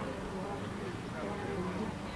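Indistinct background voices with a steady buzz underneath.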